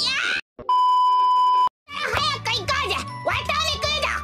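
A steady electronic beep lasting about a second, cut in hard with a moment of silence on each side. It sits between bits of a high-pitched cartoon child's voice, and a child talking over background music follows.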